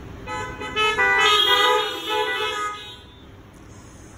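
Several car horns honking together in a sustained chorus, more joining about a second in, then dying away after about three seconds. It is a drive-in congregation honking its amen at the end of a sermon.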